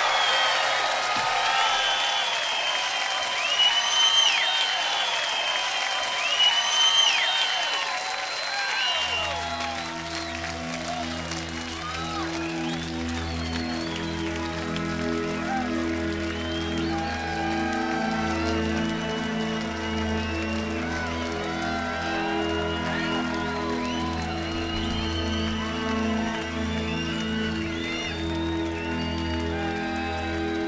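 Concert crowd cheering, whistling and applauding after a loud rock guitar song ends. About nine seconds in, a steady low sustained chord comes in underneath and holds while the whistles and cheers carry on.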